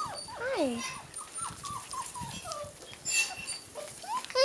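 Puppies whining and whimpering: a long falling whine, then a quick run of short high cries and another falling whine, with a brief scuffling noise about three seconds in.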